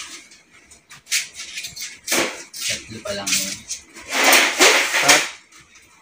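Indistinct low speech in a small room, with a few light clicks and a louder breathy burst about four seconds in.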